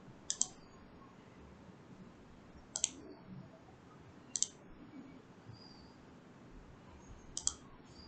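Four computer mouse clicks, a second or two apart, over faint room tone.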